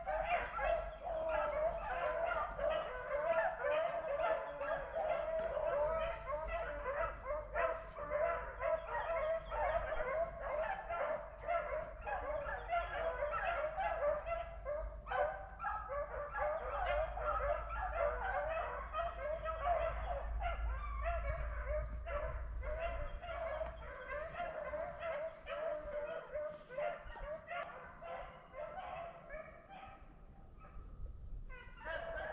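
A pack of rabbit-hunting hounds baying continuously, many voices overlapping as they run a rabbit's trail, fading a little near the end.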